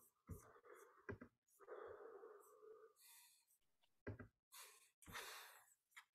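Near silence, broken by a few faint, short sounds such as breaths and small clicks.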